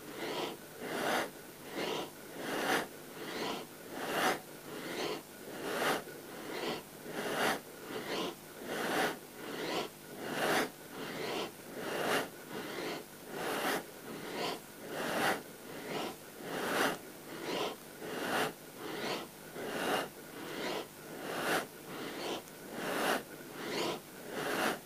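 A person's loud, rhythmic breathing during a seated spinal twist, drawing in on the twist to the left and pushing out on the twist to the right, in a quick, even rhythm of a little more than one breath a second.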